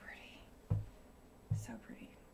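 Quiet whispered speech, a word or two, with two soft low bumps: one under a second in, one about halfway through.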